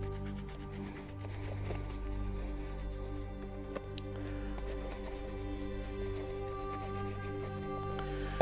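Soft background music of steady, sustained notes, with faint rubbing of a cloth on a leather shoe beneath it.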